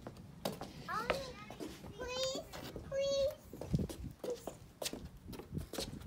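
A young child's short, high-pitched vocal sounds, not clear words, with a few light knocks in between.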